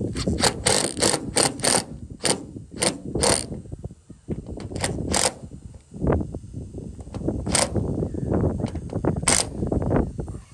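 Cordless impact driver hammering a fastener through a metal solar-mount bracket into the bus's metal roof. It runs in two bursts of rapid rattling impacts with a lull of about two seconds near the middle, with sharp clicks throughout.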